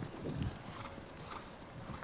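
Faint hoofbeats of a harness-racing trotter walking on a dirt track.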